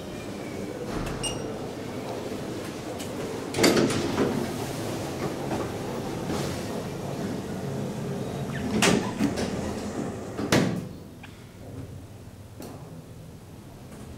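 Elevator sliding doors with a few sharp knocks, the last and loudest about ten and a half seconds in as the doors close. After that the surrounding noise falls away to a quieter hush inside the shut car.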